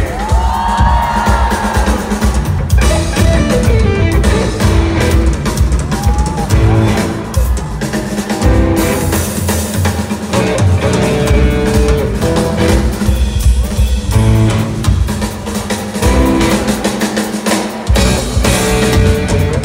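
Live band playing an instrumental passage, drum kit to the fore with bass drum and rimshots and some guitar underneath. Fans whoop over the first second.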